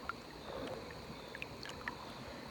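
Faint sloshing of shallow river water as a pair of pliers works under the surface, with a few small clicks.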